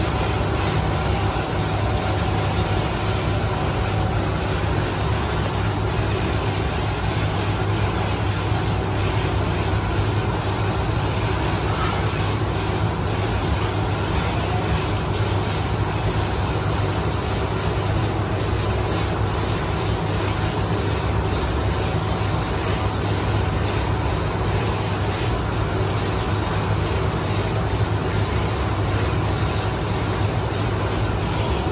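Steady hum and hiss of a paint spray booth: fans running while a compressed-air spray gun sprays a gloss coat of white paint onto a motorbike body panel. The low hum and the hiss stay even throughout.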